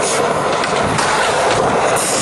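Skateboard wheels rolling over smooth concrete: a steady, loud rolling noise with a few faint clicks.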